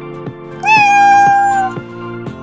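A cat's meow, one long call lasting about a second and starting just over half a second in, heard over background music with a steady beat of about two notes a second.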